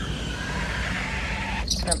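Balcony sliding glass door of a cruise-ship cabin giving a horrible squeak as it is slid, near the end, over a steady low hum.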